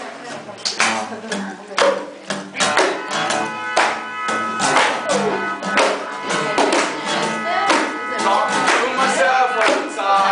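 Live acoustic guitar and mandolin strummed in a steady rhythm, about two strokes a second, with chords ringing between strokes. A voice comes in briefly near the end.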